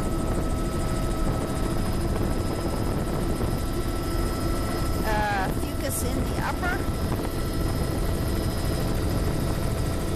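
Steady helicopter cabin noise: the engine and rotor drone runs unbroken, with a few steady whining tones in it. A voice cuts in briefly twice, about five and six and a half seconds in.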